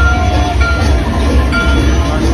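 Ride soundtrack with cartoon steam-train effects: a deep, steady rumble and short held whistle-like tones, mixed with music.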